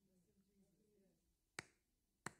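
Near silence with a faint low murmur of a voice, then one sharp click about a second and a half in.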